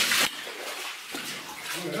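Boots wading through shallow standing water on a mine tunnel floor: a loud splash right at the start, then softer sloshing steps.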